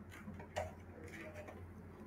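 Quiet room tone with a steady low hum and a few faint clicks, the clearest about half a second in.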